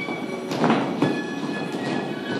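Character-dance music with sustained held notes, under the steps of a group of dancers in heeled character shoes on a studio floor, with two louder foot strikes about half a second and a second in.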